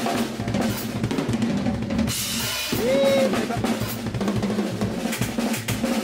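Drum kit played with fast chops: rapid, dense snare and bass-drum strokes in quick fills, with a cymbal wash about two seconds in.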